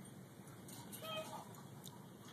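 A young woman's brief, faint sob about a second in as she chokes up with tears; otherwise a quiet room.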